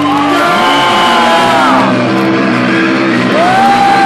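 Live metal band playing loud, distorted electric guitar that holds sustained notes, several bending downward, then one sliding up and held near the end.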